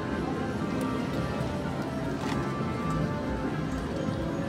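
Slot-machine floor ambience: overlapping electronic chimes and machine music from many slot machines, playing steadily.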